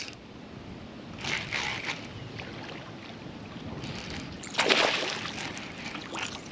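A hooked fish splashing at the water's surface beside a small boat, over light water lapping. There is a softer splash about a second in and a louder one a little after halfway through.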